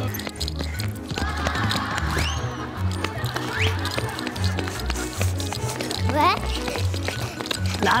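Bouncy background music with an evenly stepping bass line. A few short, high-pitched rising cries sound over it.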